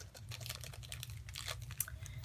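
Light crinkling and scattered small clicks of a small wrapper being opened by hand.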